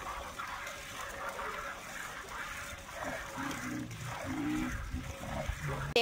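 Desi cow being milked by hand: milk squirting into a steel bucket. A low pitched sound joins in the second half.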